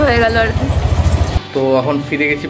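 Street background with a steady low rumble, the kind traffic makes, under a voice that trails off. It cuts off suddenly about one and a half seconds in and is replaced by background music with singing.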